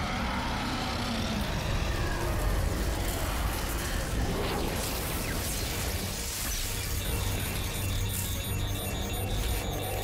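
Dramatic film score over a steady low rumble of swirling-wind sound effects.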